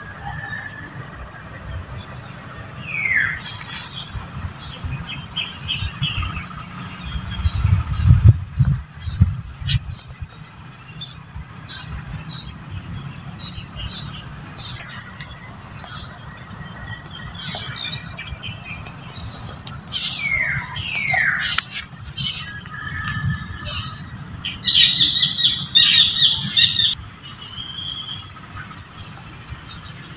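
A steady, shrill insect chorus: a continuous high whine with pulsing trills beneath it. Birds call over it with short chirps that fall in pitch, once about three seconds in and a few times around twenty seconds in, and there is a brief low rumble about eight seconds in.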